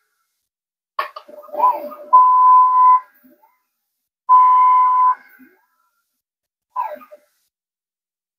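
xTool D1 laser engraver's gantry stepper motors moving the laser head through a framing pass. A click is followed by a short whine that rises and falls in pitch, then two steady high whines of about a second each, a second or so apart.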